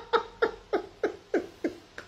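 A woman laughing: a run of short, squeaky 'hee' pulses, each falling in pitch, about three a second.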